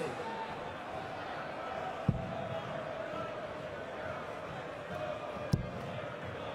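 Two darts thudding into a bristle dartboard, one about two seconds in and the second near the end, over the steady murmur of a large arena crowd.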